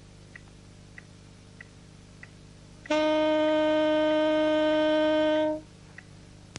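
A metronome clicking at about five beats every three seconds, then, about three seconds in, a saxophone sounding one long, steady, even note (middle C) held for about four beats and released cleanly. It is a long-tone exercise, keeping the tone smooth and even for its whole length.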